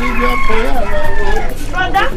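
A rooster crowing, with music and a voice underneath.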